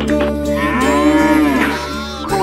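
A cartoon bull's moo: one long call starting about half a second in, rising then falling in pitch, over the steady backing of a children's song.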